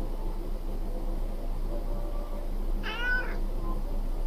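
A Maine Coon cat meows once, a short high call about three seconds in, over a steady low hum.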